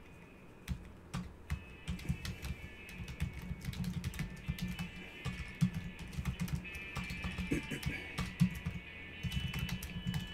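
Typing on a computer keyboard: a quick run of key clicks. Music plays underneath.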